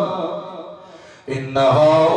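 A man chanting a sung religious recitation into a microphone, his voice holding long, wavering notes. The held phrase fades away over the first second, there is a brief gap, and the chant starts again abruptly about a second and a half in.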